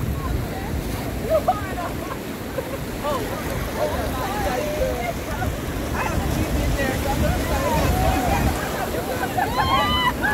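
Surf washing in over shallow water with a steady low rumble of wind on the microphone, under several voices talking over one another.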